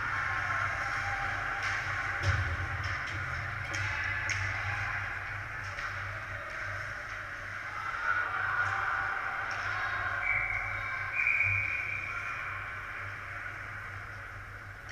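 Ice hockey rink sound with music playing: a steady hum under the play and short sharp clicks of sticks and puck on the ice, the loudest about two seconds in.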